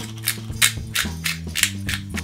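Background music with sustained low notes, over which a pepper grinder is twisted, giving short crunching grinds about three times a second.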